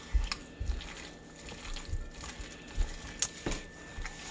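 A hand squishing and kneading a wet raw ground-turkey mixture in a glass bowl, with soft, irregular thuds and a few faint clicks.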